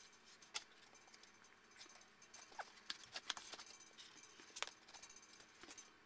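Near silence with faint, scattered clicks and light rustles of cardboard and foam packaging being handled.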